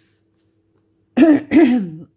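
Dead silence for about a second, then a woman's voice in two short, pitched sounds, like a throat-clearing or the first sound of a word.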